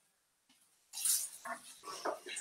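A spatula scraping and clicking against a frying pan as courgette fritters are turned, in several short bursts starting about a second in.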